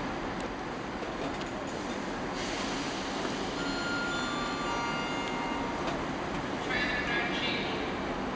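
A train hauled past the platform by GWR Castle-class steam locomotive 5043 Earl of Mount Edgcumbe, rolling slowly with a steady rumble and hiss. From about halfway through, thin high-pitched squeals ring out from the wheels on the rails, with a louder cluster of squealing near the end.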